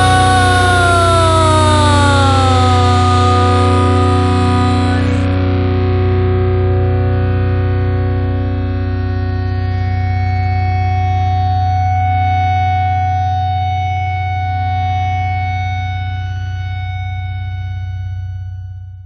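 Hard rock band's closing chord: distorted electric guitar with steady bass, held and left to ring, with notes bending down in pitch between about one and three seconds in, then slowly dying away.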